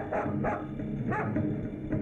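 A dog barking several times in short, sharp barks over a steady low background.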